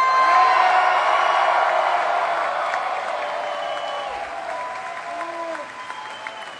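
A concert crowd cheering and clapping, with many high-pitched screams and whoops over the applause, in answer to a call to make noise for the bassist. The cheer is loudest at first and gradually dies down.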